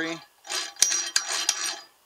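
Suzuki DRZ400 transmission gears and shafts turned by hand in the open crankcase, metal rattling and clicking with a light ring for about a second and a half, with a few sharper clicks. The gears spin free: the modified shift fork no longer interferes with the larger wide-ratio fifth gear.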